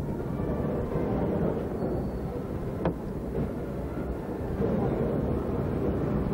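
Steady outdoor background noise: a low rumble with a faint crowd hubbub, and a single sharp click just before three seconds in.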